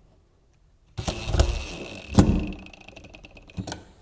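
DeWalt cordless drill/driver starting about a second in and running for roughly two seconds with a steady high whine, driving the screw that fastens a plastic pipe hanger to a steel Unistrut channel; a sharp knock comes partway through, and the run ends in rapid clicking and a final click.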